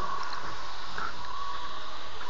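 Steady room noise with a faint, steady high hum and no distinct sounds; the wrestlers' grappling on the mat makes no audible thumps.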